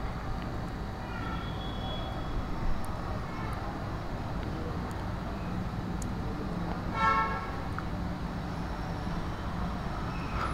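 Faint steady background noise of road traffic, with a short vehicle horn toot about seven seconds in.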